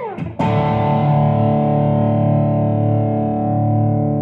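Limitless Custom Guitars Sonora electric guitar played through distortion: a note slides quickly down in pitch, then a full chord is struck about half a second in and left ringing out.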